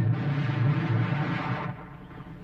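Dramatic film score: a low timpani roll, with a rushing noise swelling over it and fading out near the end.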